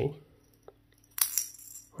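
A small steel ball rattling briefly inside a dexterity puzzle, clinking against its steel cone and glass dome as the puzzle is tilted: a faint tick, then one short bright metallic clatter a little past the middle.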